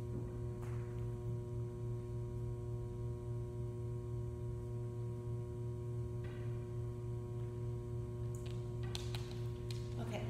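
Steady electrical hum with fixed higher overtones, unchanging throughout, with a few faint knocks and rustles in the last few seconds.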